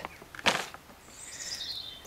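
A small bird singing in the background, a faint high phrase that falls in pitch in the second half. A brief soft rustle about half a second in.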